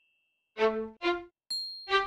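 Short pitched notes, bright and buzzy with many overtones. Two come about half a second apart after a brief silence. Near the end there is a sharp ding that leaves a thin high ring, then the start of another note.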